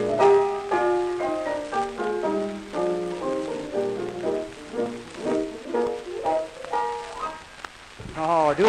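Piano duet playing a lively dance tune from an old 1930 Victor 33 rpm record, with the faint hiss of the record's surface behind it. The tune ends with its last notes just before the close.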